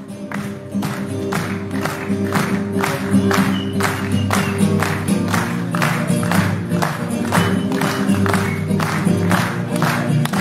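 Acoustic guitar played solo in a steady strummed rhythm, with sharp, evenly spaced beats about twice a second over ringing chords.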